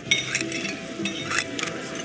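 A utensil scraping leftover food off a plate into a plastic trash bag, in three short scrapes.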